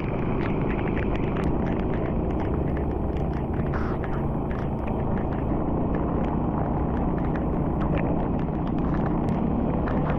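Steady low rushing road noise of travelling along a rain-soaked road: wind and tyres on wet asphalt, with scattered faint ticks throughout.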